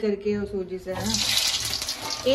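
Frozen snack dropped into hot oil in a pan, the oil sizzling in a sudden loud hiss that starts about halfway in and lasts roughly a second, after a few words from a woman.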